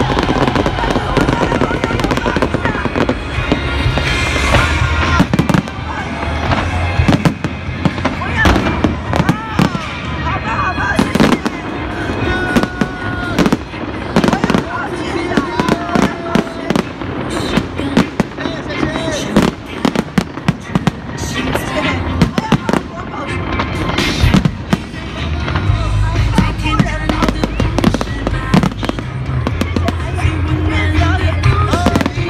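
Aerial fireworks display: a dense, irregular run of bangs and crackles from bursting shells throughout, with music and voices underneath.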